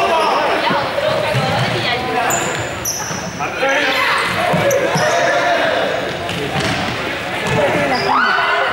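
Many young people's voices calling and chattering in an echoing sports hall, mixed with frequent short squeaks of sneakers on the gym floor and the patter of running feet.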